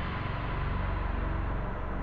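Steady low rumbling drone with a hiss above it.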